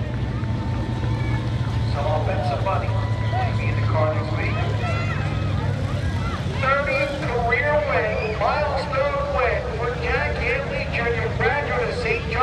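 Street stock race car's engine idling with a steady low hum that fades after about six seconds, under indistinct talking.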